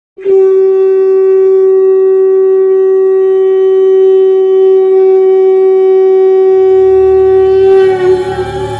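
A conch shell (shankh) blown in one long, loud, steady note held without a break. A low drone comes in near the end.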